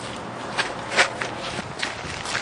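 Footsteps of several people walking on pavement, a few uneven steps with one louder footfall about a second in.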